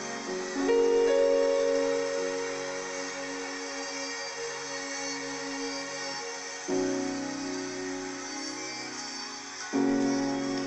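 Piano keyboard playing slow, held chords in the key of F-sharp, with a new chord struck about a second in, another near seven seconds and a third just before the end.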